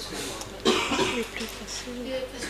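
A girl's short, breathy laugh just over half a second in.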